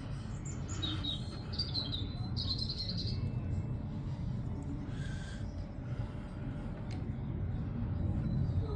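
Small birds chirping, a cluster of short high calls in the first few seconds and a fainter one about five seconds in, over a steady low outdoor rumble.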